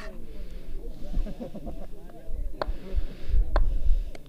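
Low, overlapping chatter of spectators' voices, with three sharp clicks and a low rumble that grows near the end.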